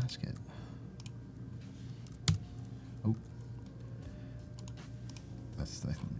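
A few scattered keystrokes and clicks on a laptop keyboard, the sharpest about two seconds in, over a low steady hum.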